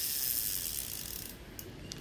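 Daiwa size-2000 spinning reel cranked fast by hand: its gears and spinning rotor give an even whirr that slows and fades out over about a second and a half, then a couple of light clicks near the end. The reel runs smoothly, with no grinding.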